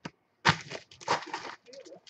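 Foil trading-card pack wrappers crinkling as they are handled, loudest in a burst of about a second starting half a second in, after a short click.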